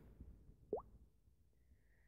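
Near silence, broken by one brief rising pop about three-quarters of a second in and a faint short high tone near the end.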